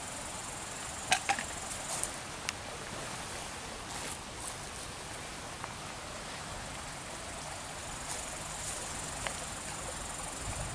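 Steady high-pitched chirring of insects in grass, swelling now and then. A few short clicks and rustles stand out, the loudest about one and two seconds in.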